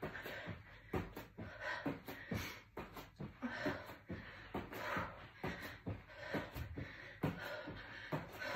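Bare feet landing on an exercise mat again and again during plank jacks, about two soft thuds a second, with heavy breaths between the landings.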